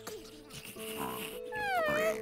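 A cartoon slug creature's squeaky voice: a short chirp about a second in, then a longer squeak near the end that slides down in pitch and levels off, over soft background music.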